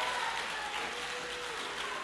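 Church congregation applauding, with a few voices calling out over the clapping.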